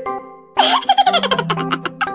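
Light marimba background music, broken about half a second in by a loud burst of rapid, high-pitched giggling laughter lasting over a second.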